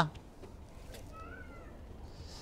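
A faint cat meow, one short call that rises and falls about one and a half seconds in, over a low steady room hum.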